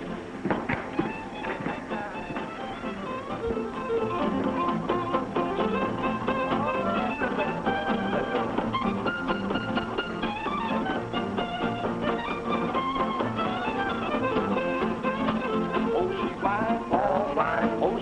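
Country dance-band music with fiddle and guitar, playing at a steady beat.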